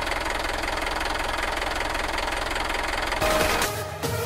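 Small motor and gearing of a miniature DIY tractor with a rice-planting attachment, running steadily as it drives, with a fast, even buzzing rattle.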